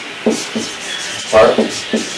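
Marker pen rubbing and squeaking on a white board in short scratchy strokes as letters are written. A single spoken word comes about one and a half seconds in.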